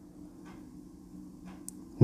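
Faint room tone with a steady low hum and two soft ticks about a second apart; a brief high-pitched chirp near the end.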